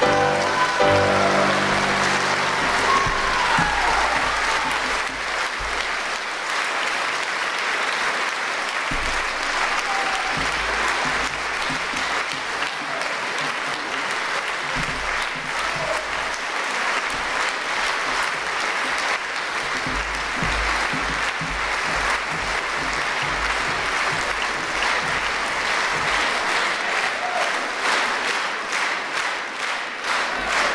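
The last chord of piano and voices dies away in the first second, then a concert audience applauds steadily.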